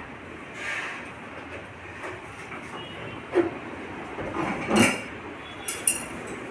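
A few knocks and plastic clicks from hands working on a split air conditioner's indoor unit, over steady background noise; the loudest knock comes a little before the end.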